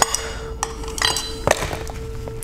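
Sharp metal clicks and clinks, about four in two seconds, some with a brief high ring, as a screwdriver works at the K2 piston in the clutch drum of a 09G automatic transmission to press it out.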